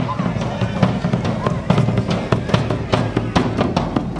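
Hand-held drums struck with sticks by marching drummers: a rapid, irregular run of sharp hits, with crowd voices underneath.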